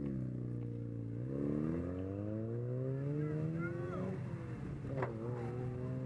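Car engine running at a low, steady idle. Its pitch dips slightly about a second in, then rises slowly over the next few seconds before levelling off.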